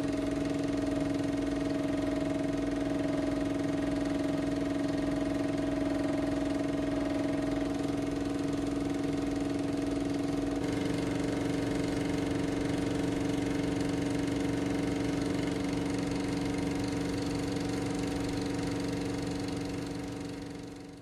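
A steady mechanical hum with a fast, regular flutter underneath. It shifts slightly in tone about ten seconds in and fades out near the end.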